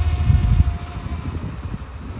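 Wind buffeting the microphone, an uneven low rumble that is strongest in the first second and then eases, with a faint steady hum under it.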